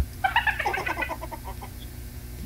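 Chicken clucking: a quick run of short calls in the first second, fading away.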